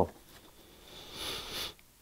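A man drawing a breath in through his nose: a soft hiss of air lasting about a second, starting near the middle and stopping abruptly.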